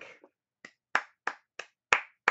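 A single person clapping her hands slowly and evenly, about three claps a second. The first clap is faint and the claps grow louder.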